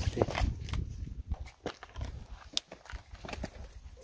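Footsteps on loose rock and gravel: irregular steps and small stones clicking underfoot.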